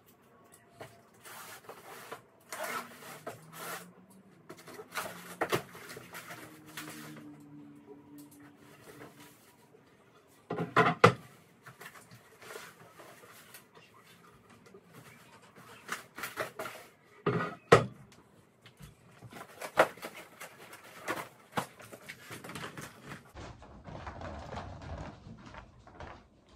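Furniture parts being unpacked and handled on a tile floor: rustling of packing material and scattered clatter, with several sharp knocks, the loudest two near the middle.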